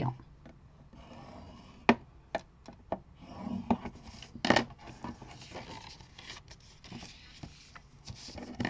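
Bone folder scoring a fold line in thin paper along the groove of a scoring board: a dry scraping rub, with the paper being handled and creased and a few sharp clicks.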